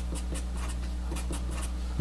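Sharpie felt-tip marker writing on paper, a quick run of short pen strokes as a term of an equation is written out, over a steady low hum.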